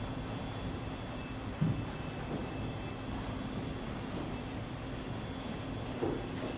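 Steady low room hum and rumble, with a faint constant higher whine, broken once by a brief low thump about a second and a half in.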